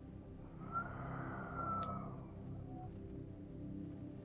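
Calming synth-pad background music holding soft, sustained tones. About half a second in, an airy swell carrying a faint whistle-like tone rises and fades over about two seconds, and a single small click falls in the middle of it.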